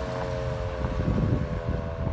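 Federal Signal 2001 electronic outdoor warning siren sounding a steady tone of several close pitches, with no rise or fall. A low rumble of wind on the microphone runs under it.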